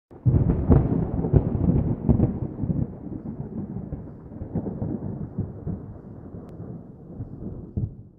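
A long roll of thunder, crackling and loudest over the first two seconds, then rumbling away steadily quieter until it cuts off.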